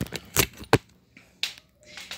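A few short, sharp clicks: two loud ones close together about half a second in and a softer one about a second and a half in.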